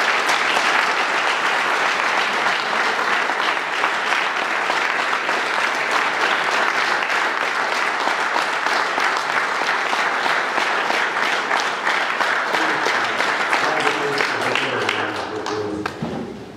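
Audience applause: dense, steady clapping from a large crowd, thinning out near the end.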